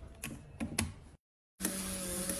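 Mechanical clicks and ratcheting from a compact film camera being handled, with a low hum under them; the sound cuts off suddenly a little past halfway. Music starts near the end.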